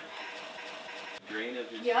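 Mostly speech: a faint, steady background hiss that cuts off suddenly about a second in, then a voice saying "yep".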